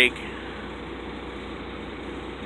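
Steady background noise: an even hiss with a faint low hum, and no distinct event.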